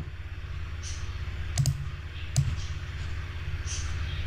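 Two sharp computer mouse clicks, a little under a second apart, over a low steady hum.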